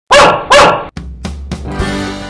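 A pug barks twice in quick succession, two loud, short barks. Background music starts about a second in.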